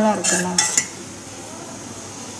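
A metal ladle clinking several times against a stainless steel pot within the first second.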